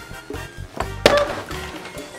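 A thrown boxed toy lands with a single sharp thud about a second in, over background music.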